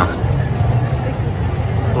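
A steady low rumble under faint background voices of people in a park.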